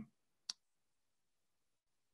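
Near silence broken by a single short, sharp click about half a second in.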